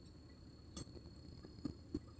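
Quiet closed-mouth chewing: a few faint, short mouth clicks, one about a second in and a couple near the end, over a steady low background hum.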